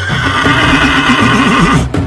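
A horse neighing: one long whinny with a wavering, trembling pitch, lasting nearly two seconds and stopping abruptly.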